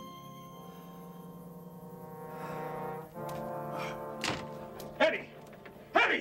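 A sustained, brass-like film score chord that shifts to a new chord about three seconds in. In the last two seconds it is broken by three heavy thuds with grunting, the sounds of a struggle.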